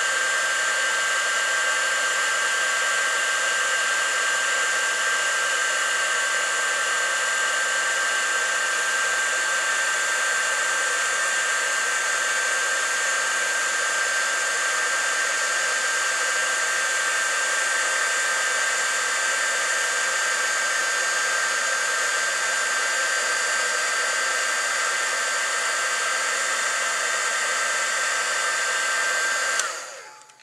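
Handheld embossing heat gun running steadily, a fan's rush with a thin high whine, as it melts ultra thick embossing enamel. It switches off abruptly just before the end.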